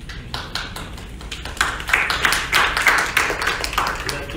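A small audience applauding: a few scattered claps at first, building to dense clapping about a second and a half in, then thinning out near the end.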